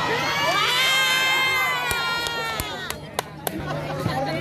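Crowd of volleyball spectators cheering and shrieking in many high voices after a spike, the cheer dying away about three seconds in. A few sharp knocks come near the end.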